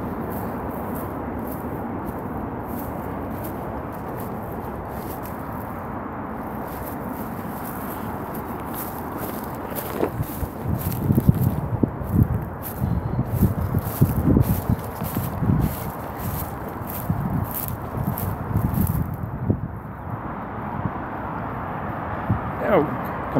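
Footsteps and rustling through dry brush and ivy as someone scrambles over an overgrown bank, with twigs crackling against clothing. About halfway through the footfalls grow heavier and more irregular for several seconds, over a steady background hum of traffic.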